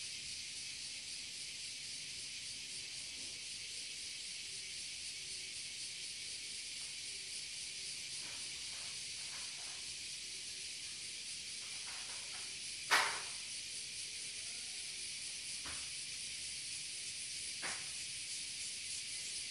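Cicadas singing in a steady, high drone. A single sharp click stands out about thirteen seconds in, with two fainter ones near the end.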